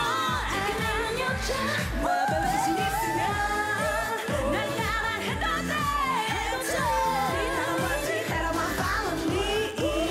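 Female K-pop group singing live into handheld microphones over a pop backing track with a steady beat.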